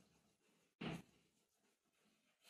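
Near silence, broken once about a second in by a short scrape of chalk on a blackboard as a word is written.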